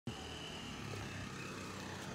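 Steady outdoor street ambience: a low hum of distant traffic, with a faint thin high tone through the first second or so.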